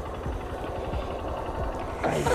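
Honda CB Shine 125 motorcycle's single-cylinder engine running steadily at low revs, a low rumble with no revving.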